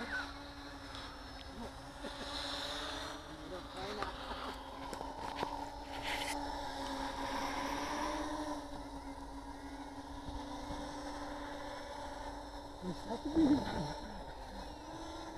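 Small radio-controlled quadcopter's motors and propellers humming steadily in flight, the pitch wavering slightly and rising a little around the middle as it is flown.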